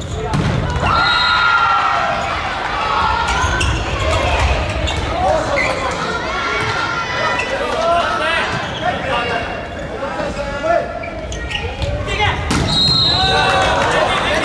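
Volleyball play on an indoor court: the ball struck several times, the loudest hit near the end, with sneakers squeaking on the floor and players calling out.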